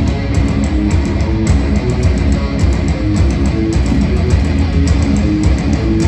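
Metalcore band playing live and loud: distorted electric guitars and bass over drums with rapid, regular hits.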